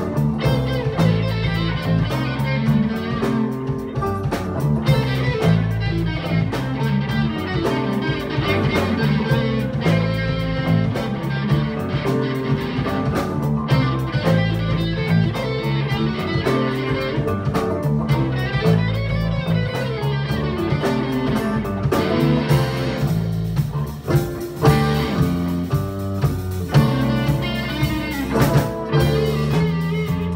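Live band playing a fast big-beat rock song: electric guitar, acoustic guitar, bass guitar and drums with a steady driving beat.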